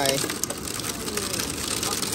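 A car engine idling with its cooling fans running, a steady rushing noise with faint irregular ticks, under the tail end of a spoken word as it begins.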